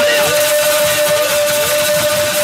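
Live stage-band music with one long steady held note, and a few short sliding phrases over it.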